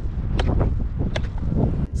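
Wind buffeting the microphone, with a few sharp knocks of a hammer chipping at a hard abandoned anthill.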